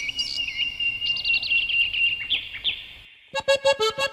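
Bird chirps and trills, with quick repeated notes and swooping calls, for about three seconds. Then the next song starts with accordion and percussion about three seconds in.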